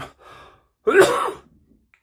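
A man coughs once, loudly, about a second in, with his fist to his mouth.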